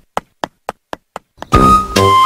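A quick, even run of sharp knocks, about four a second, followed about one and a half seconds in by loud synthesizer-and-bass title music.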